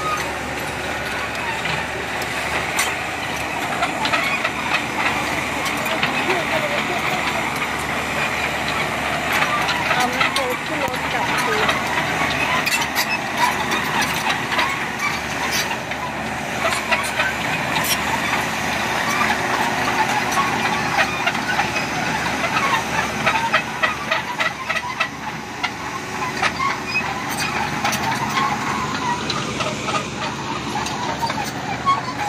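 Diesel engine running steadily as a Komatsu tracked excavator moves on the road, its steel tracks clicking and clanking on the pavement, with another diesel truck idling.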